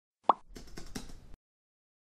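Intro sound effect: a short pop that sweeps up in pitch, then about a second of soft clicking over a low hiss that stops abruptly.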